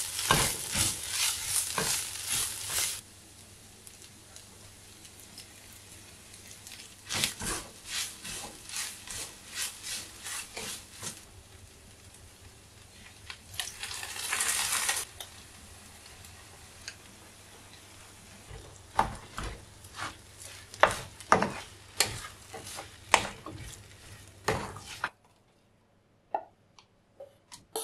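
Sliced onions sizzling in a frying pan while a wooden spatula stirs them and knocks against the pan. The sizzling is loud for the first three seconds, then fainter. About fourteen seconds in there is a short rush of sizzling as canned tomato is tipped into the pan, and sharp spatula knocks follow near the end.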